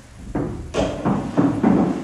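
A wooden chair knocking and scraping on a wooden floor as it is moved, with footsteps: a run of about five short wooden thumps and knocks.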